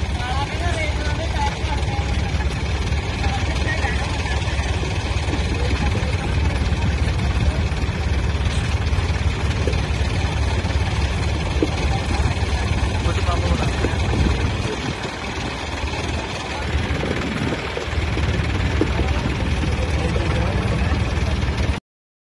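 Diesel engines of a Mahindra Arjun 605 and a John Deere 5305 tractor running hard under load as the two pull against each other in a tug of war, with a heavy, steady low drone. The drone eases for a couple of seconds about three-quarters of the way through, rises again, then cuts off suddenly just before the end.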